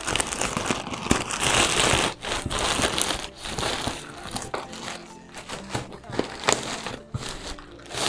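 Thin plastic courier bag crinkling and rustling in irregular bursts as it is opened by hand and a shoe box is worked out of it.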